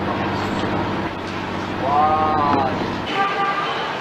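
Street traffic: a vehicle engine drones steadily, with two short horn toots about two seconds in and a second later.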